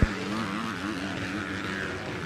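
Motocross bike engine buzzing as the rider goes around the dirt track, its revs rising and falling through the turns. A brief click at the very start.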